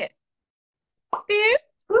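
After a second of silence, a short pop and then a brief high-pitched vocal sound from a woman, a mouth-made mock clink of mugs.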